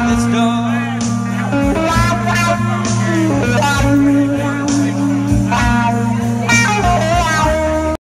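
Electric guitar, a light blue Stratocaster-style solid body played through an amplifier, playing a blues lead with bent notes that slide up and down in pitch. It cuts off suddenly at the very end.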